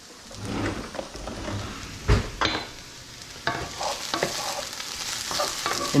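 Vegetables sizzling in oil in a frying pan, with a few knocks and scrapes of a utensil against the pan, the loudest knock about two seconds in.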